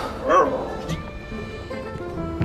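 A dog gives one short bark about a third of a second in, over background music with long held notes.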